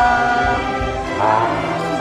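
A cheerful song sung by several voices together: one long held note, then a shorter phrase a little past the middle.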